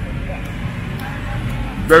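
Steady low background rumble of busy street ambience, with a man laughing briefly near the end.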